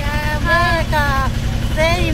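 Shared three-wheeler tempo's engine running with a steady low chug, with a woman's voice singing over it.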